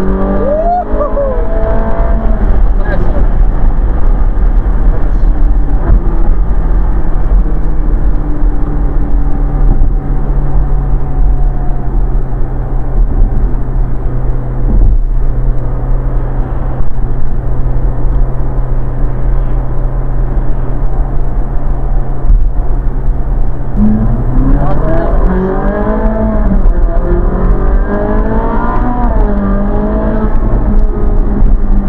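Ferrari 458's 4.5-litre V8 running at a steady highway cruise, with wind rush through the open top. The engine note climbs briefly about a second in, then rises and falls several times near the end.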